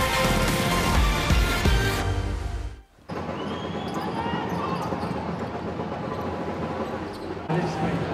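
A short bass-heavy music stinger plays for about three seconds and cuts off suddenly. Then comes basketball court sound: the ball bouncing, sneakers squeaking on the hardwood, and arena crowd noise.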